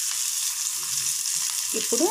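Onions, dried red chillies, green chillies and curry leaves frying in hot oil in an aluminium kadai, a steady sizzle.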